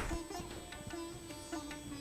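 Background music played on a plucked string instrument over a held note that shifts in pitch a few times, with a few faint knocks.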